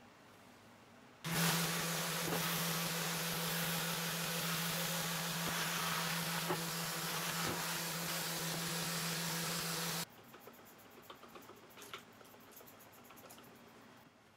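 Festool random orbital sander running with its dust-extraction hose on a cast iron table saw top: a steady hum under a broad hiss. It starts suddenly about a second in and cuts off about ten seconds in. A few faint squirts of a degreaser spray bottle follow.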